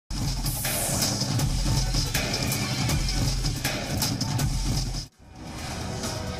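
News bulletin intro theme music with a heavy, pulsing bass beat and bright swishing accents. It cuts off abruptly about five seconds in, and a softer music bed fades up after it.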